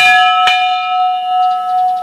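A brass ship's bell struck twice, about half a second apart, then ringing on with one clear note and its overtones, fading slowly.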